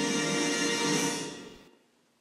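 Orchestral fanfare holding its final chord, which fades away and ends about a second and a half in.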